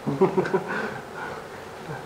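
Quiet, murmured voices from a small group, mostly in the first second, then a lull.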